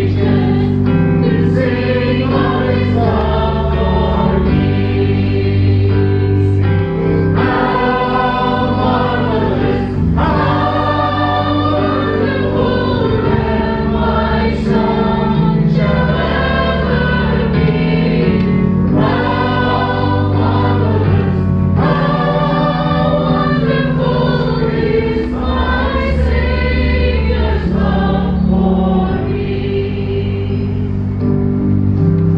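Worship song sung by a group of voices, accompanied by a keyboard holding sustained chords that change every few seconds.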